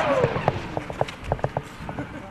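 Artillery shell landing close by: the blast rings on between the buildings, with a falling whistle at the start and a few short sharp knocks after it.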